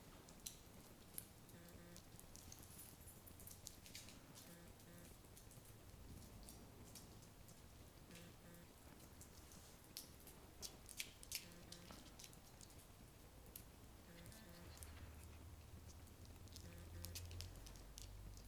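Near silence, broken by scattered faint, sharp clicks from a Shetland sheepdog moving about on a hardwood floor, a few louder ones about half a second in and around the middle. A low rumble rises near the end.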